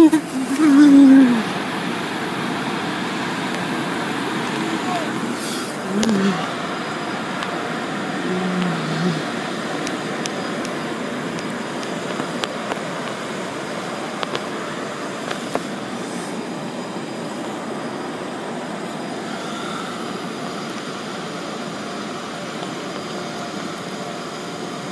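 Steady rush of water spraying against a car's windows, heard from inside the car in an automatic car wash, with a few short voice sounds near the start and around six and eight seconds in.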